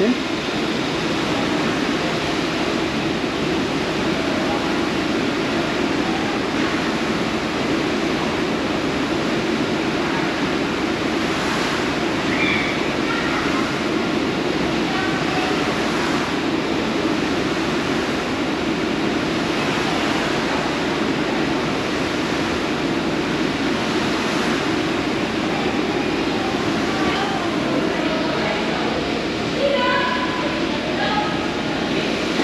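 Steady, continuous rushing noise from an indoor rolling ski slope, its motor-driven carpet belt running with skis sliding on it.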